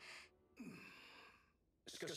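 A faint, breathy sigh with a short falling pitch about half a second in, then near silence.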